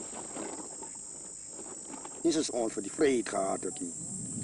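A steady high-pitched insect drone. A man's voice starts speaking about two seconds in.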